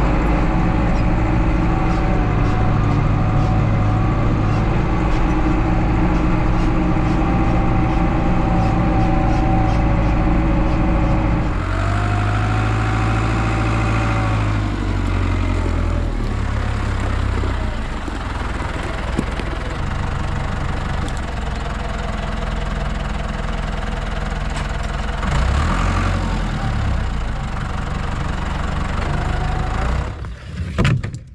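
Case tractor's diesel engine running steadily as it drives, heard up close for the first dozen seconds and then from a little further off. The revs rise and fall briefly a couple of times, at about twelve seconds in and again near the end.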